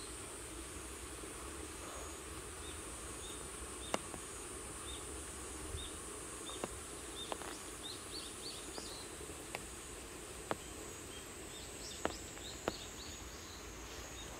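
Quiet outdoor ambience: a steady high insect hum with small birds chirping in short repeated calls, and a few sharp isolated ticks.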